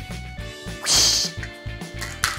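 Background music with a steady beat. About a second in comes a single short, loud, hissing swish.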